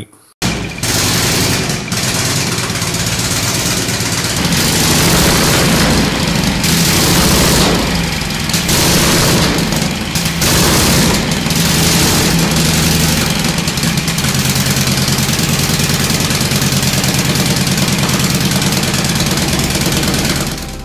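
Vintage V-twin motorcycle engine with exposed valve springs, running steadily at idle with a rapid mechanical clatter. It comes in suddenly about half a second in, and its loudness dips briefly twice in the middle.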